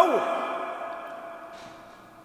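A man's voice ends a phrase with a falling syllable, then its echo rings on and slowly fades through the PA in a large reverberant hall. There is a faint breath about a second and a half in.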